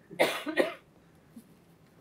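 A man's short, breathy burst from the throat, in two quick pulses lasting under a second.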